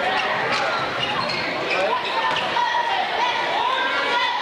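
A basketball bouncing on a hardwood gym floor during play, a few sharp thuds, over a steady din of spectators' and players' voices.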